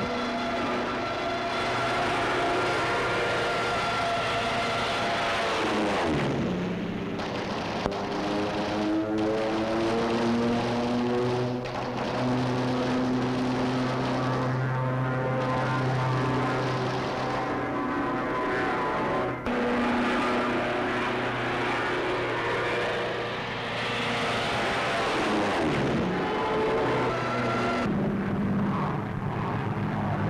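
Propeller-driven fighter planes' piston engines droning steadily. The pitch swoops down and back up once about six seconds in and again a few seconds before the end, as planes dive or pass.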